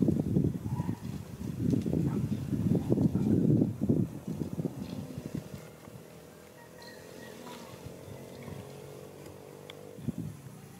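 Wind buffeting the microphone in loud, uneven low gusts for about four seconds. Then, from about five seconds in, a quieter steady engine hum from a running motor vehicle.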